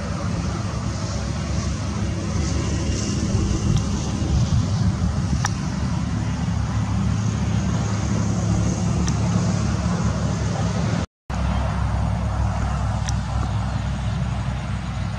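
Steady low rumble of a motor vehicle engine or road traffic out of view, with a few faint clicks over it. The sound drops out for an instant about three-quarters of the way through.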